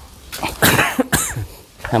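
A person coughing twice in quick, harsh bursts, about half a second and a second in.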